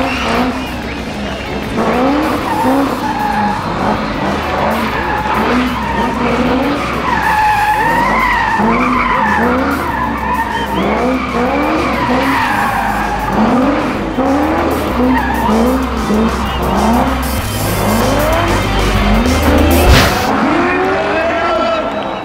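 Chevrolet Corvette C6 V8 drifting with its engine revving up and dropping back over and over, about once or twice a second, and its tyres squealing, loudest in the middle stretch. A sharp crack comes near the end. Event music with a bass line plays underneath.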